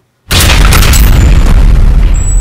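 A sudden, very loud boom about a quarter-second in, with a deep rumble that carries on and only slowly dies away.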